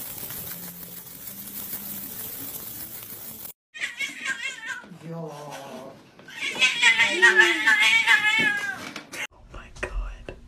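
A cat yowling: a run of drawn-out, wavering cries that starts about four seconds in, is loudest in the second half and cuts off suddenly. Before it there is a few seconds of faint steady hiss.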